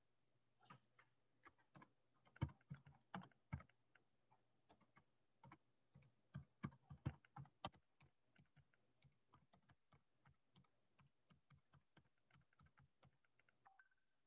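Typing on a computer keyboard: a faint run of irregular key clicks, several a second, with the louder strokes in the first half and lighter, quicker taps later on.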